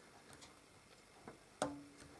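Screwdriver working a screw into the metal drive cage of a PC case: faint ticks, then a sharp metallic click about one and a half seconds in, followed by a short ring.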